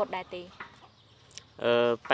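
A chicken clucking once, briefly, near the end, after a moment of quiet.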